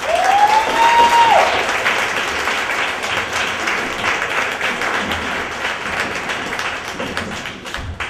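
Audience applauding at the end of a spoken-word poem: a burst of clapping that starts suddenly and is loudest in the first couple of seconds, then carries on a little lower. One voice in the audience gives a rising whoop over the clapping in the first second or so.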